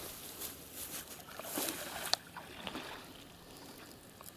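Pond water sloshing and lapping softly around a man wading chest-deep and working a long pole, with a sharp click about two seconds in.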